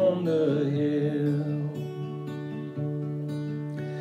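Acoustic guitar strummed steadily in a country-folk rhythm. A man's voice holds and lets fall the end of a sung line during the first second or two, then the guitar carries on alone.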